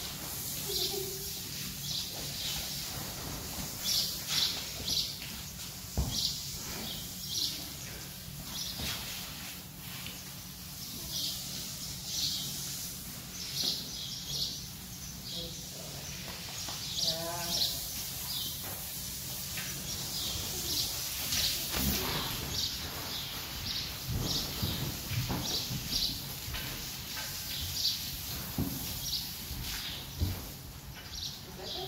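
Small birds chirping in short high notes, repeating about once a second, with one wavering animal call about halfway through.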